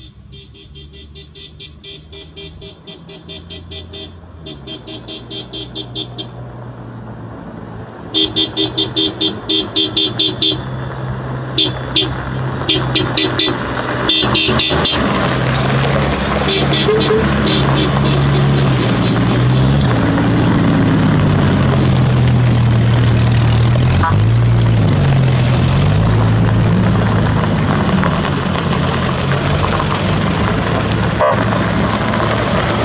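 A convoy of 4x4 off-road pickup trucks approaching on gravel, with car horns beeping in rapid repeated bursts through the first half. The engines then grow louder as the trucks pass close, with revs rising and falling.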